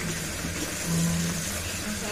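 Tap water running onto jerjer (arugula) leaves in a plastic colander as hands rinse them, a steady rush of water with a low hum underneath.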